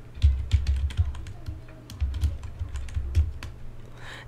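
Typing on a computer keyboard: an irregular run of quick key clicks with dull low thuds as a search query is typed in.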